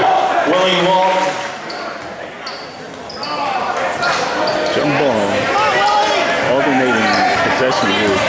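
Basketball bouncing on a hardwood gym floor, with voices and shouts echoing in the gym; the voices ease off for a moment a couple of seconds in.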